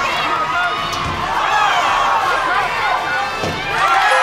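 Crowd of students and studio audience shouting and cheering excitedly, with a couple of dull thuds from footballs being thrown at targets.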